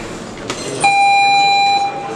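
Electronic round-start signal on a boxing ring timer: one steady beep about a second long, cutting off abruptly, signalling the start of round 1.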